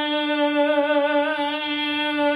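A soprano's voice holding one long sung note with vibrato. It demonstrates the narrowed, twangy 'squillo' space in the throat being opened slowly toward a rounder tone.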